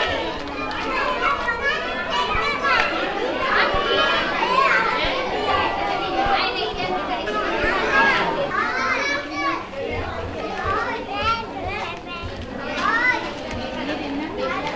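A crowd of young children's voices chattering and calling out over one another, a continuous overlapping babble.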